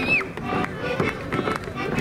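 Folk dance music led by an accordion, with voices and the dancers' shoes stepping and scuffing on the stage floor. A held high note ends just after the start.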